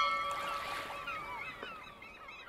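Logo sting of a video outro: a struck chime-like tone with several ringing pitches fades over about the first second and a half. Many short gliding bird cries sound over a soft hiss, getting quieter toward the end.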